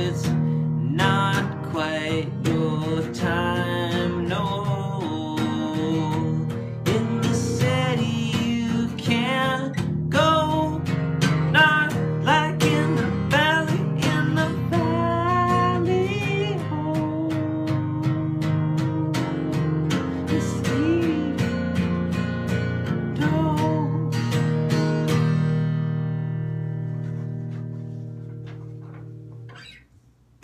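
Guitar instrumental outro: strummed chords with a bending melody line over them, ending about 25 seconds in on a last chord that rings and fades out.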